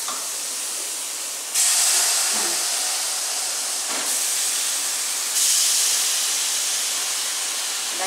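Raw chicken pieces sizzling as they are dropped into a pot of hot oil with fried onion, garlic and spices to sear. The sizzle jumps louder about one and a half seconds in and again past five seconds as more pieces go in.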